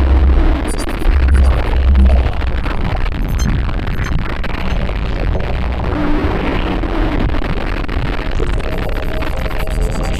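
Background electronic music: a dense, noisy texture with three heavy bass hits in the first two seconds.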